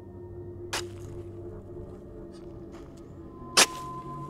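Two sharp hoe-strike sound effects about three seconds apart, the second much louder, over a soft ambient music drone.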